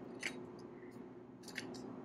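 A few short clicks and taps of a hand-held lever citrus press being handled as a lime half is set into it, one early and a pair about one and a half seconds in, over a faint steady hum.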